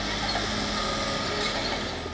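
Tracked excavator working, its diesel engine and hydraulics giving a steady mechanical noise with no distinct rock impacts.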